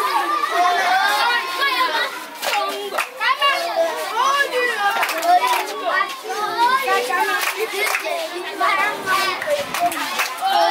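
A group of children laughing, shouting and chattering excitedly all at once while they play, with a few sharp hand claps among the voices.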